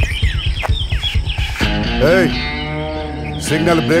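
Film background score: a fast, steady low drum beat that gives way about a second and a half in to a held chord with a wavering, rising-and-falling tone over it. A man's voice starts speaking at the very end.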